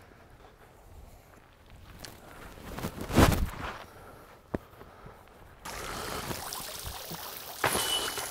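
A disc golf drive from a turf tee pad, heard as a brief burst of noise about three seconds in. After that, steady running water from a small pond. Near the end a disc strikes the basket's metal chains with a short metallic jingle.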